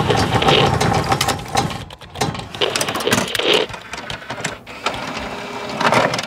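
Sound effects of an animated logo intro: a dense, fast run of mechanical-sounding clicks and ticks, like gears or a ratchet, with a brief dip about two seconds in.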